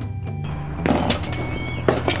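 Background music fading out, then a burst of rattling clicks and knocks from about a second in: a few dozen super balls bouncing and clattering on hard ground.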